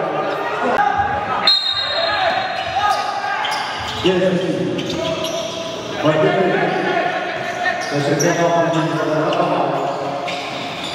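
Live game sound on an indoor basketball court: a ball bouncing on the floor in sharp knocks, under voices, echoing in a large gym hall.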